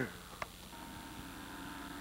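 A sharp click, then a faint steady drone from a snowmobile engine running some way off on the ice.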